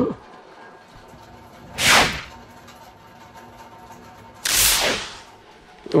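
A short laugh, then two loud swishing whooshes about three seconds apart, each lasting about half a second.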